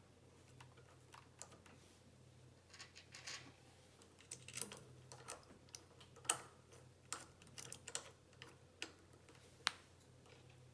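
Faint, irregular small clicks and ticks of metal parts being handled by hand as the set screws of a focuser bracket are hand-tightened. The clicks thicken after the first few seconds, with two sharper ones in the second half.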